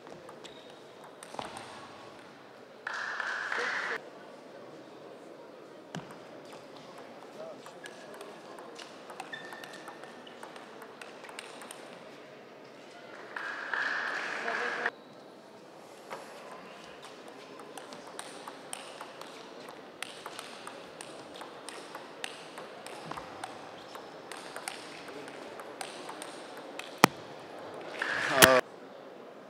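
Table tennis ball clicking off bats and the table in short rallies, with sharp irregular pocks and one especially loud hit near the end. Two brief bursts of crowd noise break in, about three seconds in and again around thirteen seconds.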